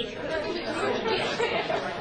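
Indistinct chatter: several people talking at once, with no single voice standing out.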